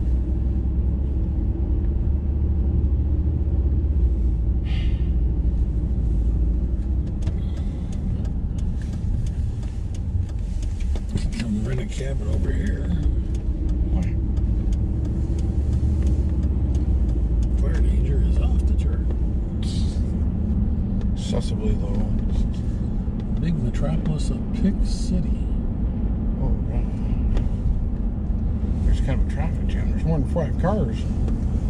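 Road noise inside a moving vehicle's cabin: a steady low rumble of engine and tyres while driving.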